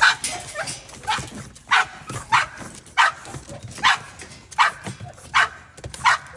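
A dog barking in short, high-pitched barks, about eight in a row, evenly spaced under a second apart.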